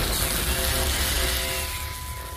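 Television drama soundtrack: a loud lightning crash and thunder rumble over rain, with held notes of background music coming in during the second half.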